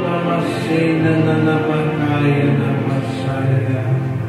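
A man's voice chanting in long held notes that shift slowly in pitch, over sustained electric keyboard chords.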